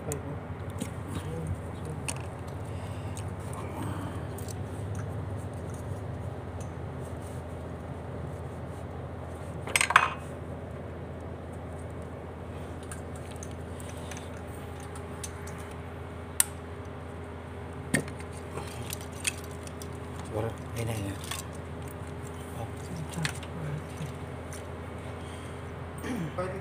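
Scattered clicks and metallic clinks of hands working wiring-harness connectors and tools on an engine. The loudest is a ringing metal clank about ten seconds in. Under them runs a steady low hum.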